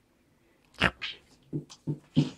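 Dogs play-fighting: a few short, sharp dog vocal sounds, the loudest just under a second in, followed by a smaller one and two brief low ones near the end.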